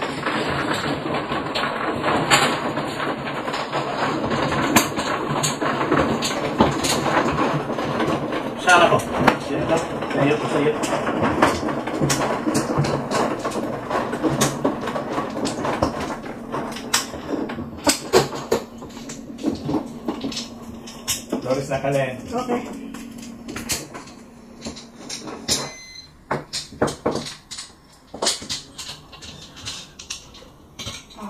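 Mahjong tiles clicking and clacking as players draw, discard and push them on the tabletop, over a murmur of voices.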